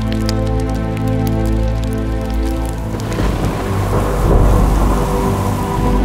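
Background music of sustained chords with sparse faint crackles. About three seconds in, a rain-and-thunder sound effect swells in over it: heavy rain hiss with a deep rolling rumble.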